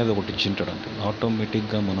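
A man speaking Telugu into a wired earphone microphone, with some drawn-out held syllables.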